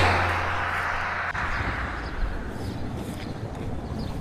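A motor vehicle passing close by on the road, loudest at the very start and fading over about a second, then a steady, quieter outdoor background.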